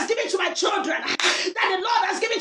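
A woman praying aloud at a shout in rapid, high-pitched syllables that form no English words, as in praying in tongues, with a few sharp smacks among them.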